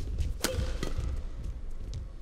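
Badminton racket striking the shuttlecock during a rally: one sharp hit about half a second in and a fainter hit shortly after, over a low hall rumble.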